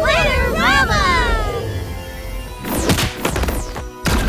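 Cartoon soundtrack of music and magic sparkle effects: a high, gliding cry in the first second and a half, then a run of quick falling whooshes about three seconds in as the pixies come through the portal.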